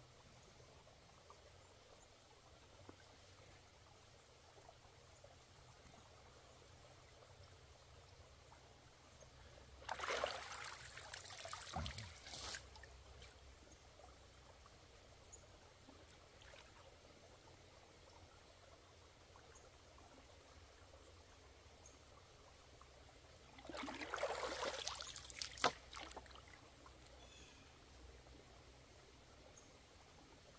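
Pond water splashing and sloshing in two short spells, about ten and twenty-four seconds in, as hands pull sticks and mud from a beaver-plugged culvert inlet under the water. Between them, a faint trickle of water.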